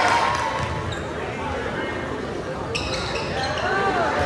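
Sounds of a basketball game on a hardwood court: sneakers squeaking sharply near the start and again near the end, with a ball bouncing between. Spectators' voices run underneath.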